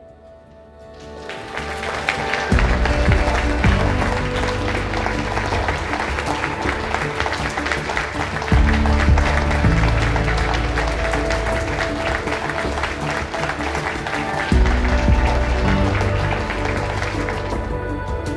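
An audience applauding, swelling up about a second in and carrying on, over background music with deep sustained bass notes that swell every few seconds.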